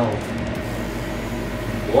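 A steady low hum fills the room, and a single word, 'What?', is spoken at the very end.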